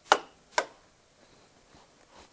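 Two sharp taps about half a second apart, the first a little louder, each dying away quickly.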